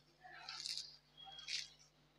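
Crisp crust of a deep-fried bread cutlet crackling under fingertip pressure: two short, faint crunches. The sound shows the crust has fried very crispy.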